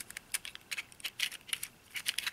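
Plastic layers of a 3x3x2 Evil Twin twisty puzzle clicking as they are turned quickly during an R/U move sequence, in a rapid run of sharp clicks. The puzzle is built from two fused 24 mm 2x2 cubes with 3D-printed extensions.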